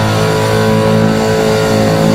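Heavy metal recording: a distorted electric guitar chord held and ringing out, with bass underneath.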